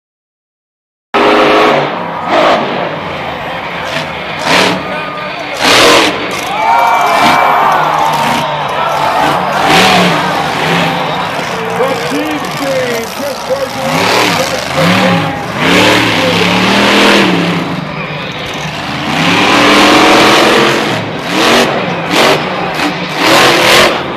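Monster truck's supercharged V8 revving hard and repeatedly, rising and falling in pitch, with sharp loud bursts, starting about a second in.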